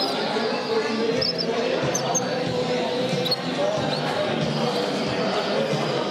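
People talking in the background, with a few brief high chirps from caged songbirds.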